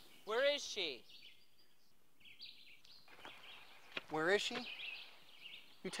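A man's voice calling out twice, once near the start and again about four seconds in, with faint birds chirping in the quiet between.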